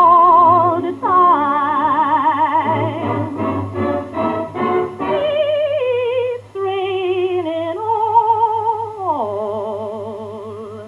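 A woman singing a slow blues song in a trained voice with wide vibrato: long held notes and phrases that fall in pitch, one sliding down near the end.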